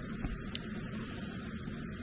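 Steady, low outdoor background noise with no distinct event, and a single faint click about half a second in.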